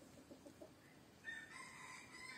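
Faint chicken clucks, then a rooster crowing from about a second in.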